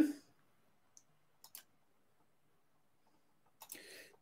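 A few faint clicks of a computer mouse, spread out in near silence: one about a second in, then two close together about a second and a half in.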